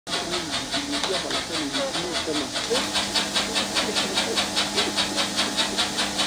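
Electric animal-feed mixing machine running, its paddles churning meal with a rhythmic swishing hiss about six times a second. A steady motor hum comes in a little before halfway, and voices talk faintly underneath in the first half.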